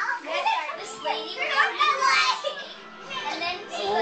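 Several children's voices chattering and calling out over one another, high-pitched and overlapping.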